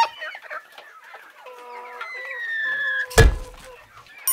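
Hens clucking with a rooster's long crow, followed by a sudden loud thump about three seconds in.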